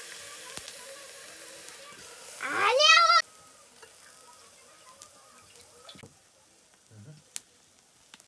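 Meat sizzling in a pot over a wood fire, a steady hiss that drops away about three seconds in, leaving only faint small clicks. About two and a half seconds in, a loud, short, high-pitched call rises in pitch over the sizzle.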